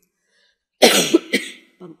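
A woman coughing: a short run of about three coughs starting about a second in, the first the loudest.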